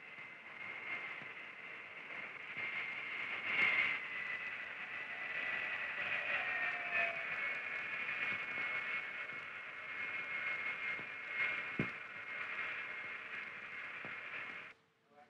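Turbojet engines of a B-58 Hustler whining steadily over a hiss, the whine sliding slightly lower about halfway through. A brief thump comes about twelve seconds in.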